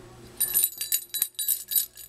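Baby's toy rattle being shaken, a run of bright jingling rings from about half a second in until just before the end.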